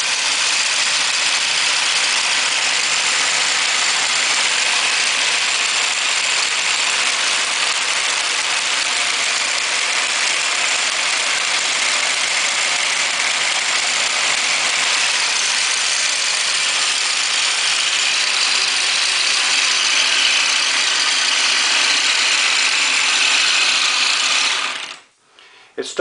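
Homemade aluminium crankshaft-and-connecting-rod machine, driven by an electric motor through a gear transmission, running fast with a steady dense whir and clatter. It stops suddenly about a second before the end.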